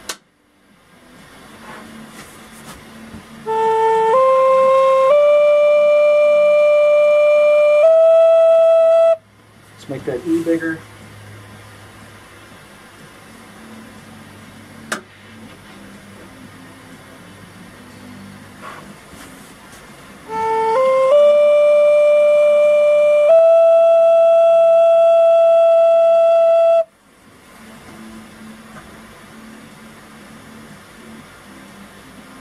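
Native American flute played twice, each time climbing step by step through four notes and holding the highest: test notes sounded during tuning to check whether the finger holes play sharp or flat.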